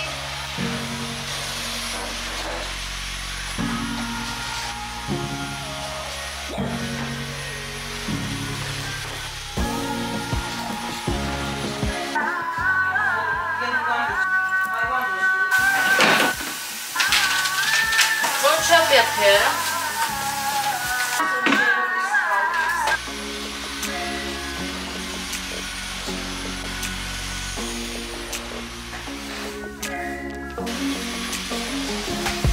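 Background music: a song with a stepping bass line, and a sung vocal part in the middle stretch.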